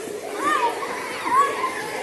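A crowd of young schoolchildren's voices shouting excitedly all at once, with several high rising-and-falling whoops standing out above the din.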